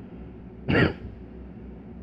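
A man clearing his throat once, briefly, a little under a second in.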